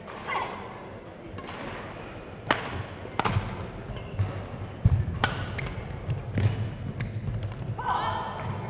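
Badminton rally: about five sharp racket strikes on a shuttlecock, a second or two apart, with thudding footsteps on the court floor between them.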